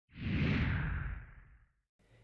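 A whoosh transition sound effect that swells in quickly and then fades away over about a second and a half.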